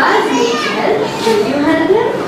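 Young children's voices chanting a prayer together in unison, the pitch held and gliding.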